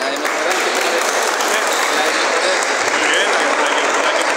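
Spectators in a gymnasium applauding, starting suddenly and carrying on steadily, with crowd voices mixed in.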